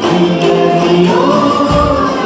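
Garba music from a live band played through a hall's speakers: a singer holding long notes over a fast, steady percussion beat of about four strokes a second.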